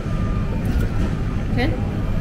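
Steady low background rumble of arcade machines and mall noise, with a brief spoken 'okay?' near the end.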